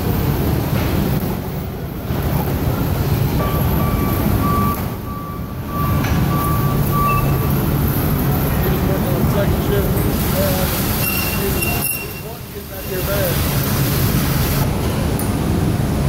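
Forklift engine running with a steady low hum under loud warehouse noise. A string of short high beeps sounds from about four to seven seconds in.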